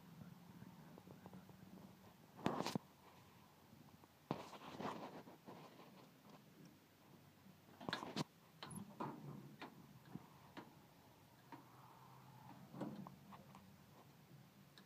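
Faint scattered knocks and rustles, with sharper clicks about two and a half seconds in and twice around eight seconds in.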